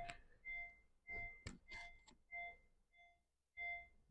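Faint electronic warning chime in a 2018 Honda Vezel Hybrid, beeping over and over at a steady pace of a little under two beeps a second. There is a soft click about one and a half seconds in.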